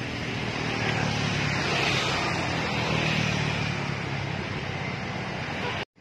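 Steady rush of wind and road noise on the microphone of a camera carried on a moving bicycle, with motor traffic underneath; it cuts off abruptly just before the end.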